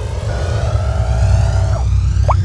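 Coffee machine dispensing coffee, its pump humming steadily and low, with background music.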